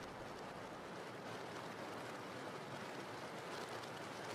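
Low, steady rain: an even hiss of falling rain with no other events.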